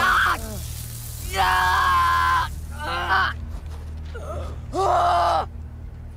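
A boy screaming and crying out in pain as his hand is branded: a string of about five cries, the longest held for about a second, over a steady low hum.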